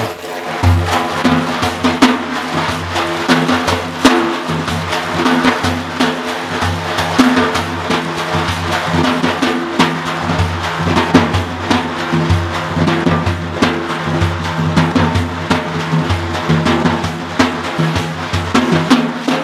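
A daf, the large Kurdish frame drum, is struck by hand in a fast, steady rhythm. Sustained pitched tones from a melodic instrument play underneath, in an instrumental passage with no singing.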